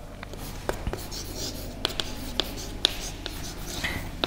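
Chalk writing on a blackboard: light scratching broken by a string of short, irregular taps as the letters are formed.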